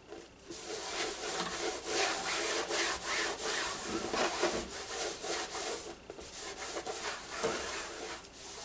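A cloth rubbed over the surface of a painted stretched canvas in repeated wiping strokes, an irregular scrubbing swish.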